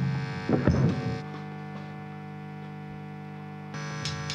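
The band stops and the sound drops sharply, with a couple of short noises in the first second. Then the amplifiers sit idle between songs, giving a steady electrical mains hum made of many evenly spaced tones.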